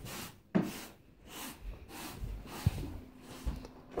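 Rustling and rubbing from a handheld phone being carried as the person walks, with a sharp knock about half a second in, another a little before the end, and a few soft thumps.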